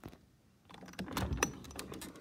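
A window being opened by hand: a click, then a run of sharp clicks and rattles from the sash and frame.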